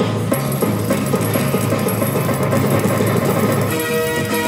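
Double Blessings video slot machine playing its win celebration music while the win meter counts up, marking a big win. The music is a busy run of quick notes, and near the end it shifts to held tones.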